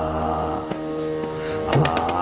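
Harmonium playing sustained chords in an instrumental passage of Sikh kirtan. Near the end, a few tabla strokes come in, with a low bass-drum thud among them.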